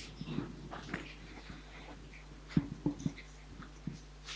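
Quiet room noise in a lecture hall with scattered rustles and short knocks, a cluster of sharper knocks about two and a half to three seconds in.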